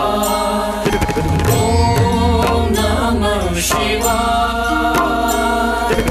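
Hindu devotional music, a bhajan with a chant-like melody over a steady low drone.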